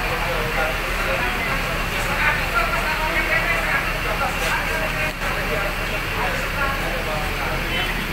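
Indistinct conversation among several people, over a steady low hum from an idling bus engine.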